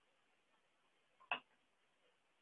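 Near silence with a single short click a little over a second in.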